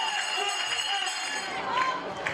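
Several women's voices shouting and cheering in a goal celebration, high-pitched and overlapping.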